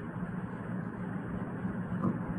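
Steady low hum with a faint hiss: the background noise of the recording, with no distinct event.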